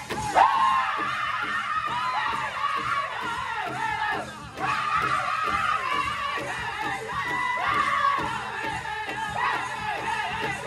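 Pow wow drum group singing high-pitched in unison over steady, even beats struck together on a large shared pow wow drum. The voices drop out briefly about four and a half seconds in, then a high lead comes back in and the group follows.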